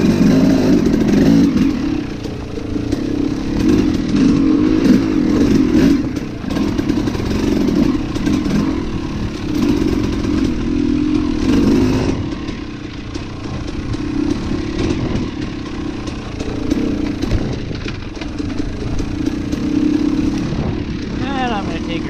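Dirt bike engine running on a downhill trail ride, its revs rising and falling with the throttle.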